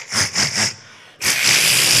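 A man's mouth-made sound effect into the stage microphone: a few quick breathy puffs, then about a second in a loud, sustained hiss, acting out the take-off as the run starts.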